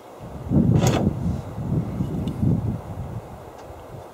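Wind buffeting the microphone in uneven gusts, with a single sharp knock about a second in.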